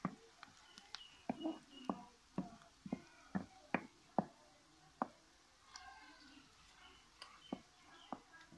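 Wooden spoon knocking and scraping against an aluminium kadai while sliced onions are stirred: sharp, irregular taps about one or two a second, pausing a little after the middle before two more near the end.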